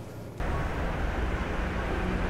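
Outdoor street ambience: a steady low rumble of traffic with a haze of background noise, cutting in abruptly about half a second in after a brief quiet car-cabin hum.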